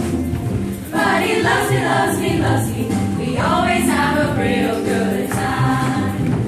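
Women's choir ensemble singing an upbeat pop song in unison and harmony over a backing with a steady bass line and beat. The voices drop out briefly just before a second in, then come back in, with a sliding phrase a little past halfway.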